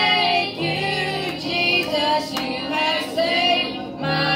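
A small group of children and teenagers singing a song together through microphones and a PA loudspeaker, over steady held low notes.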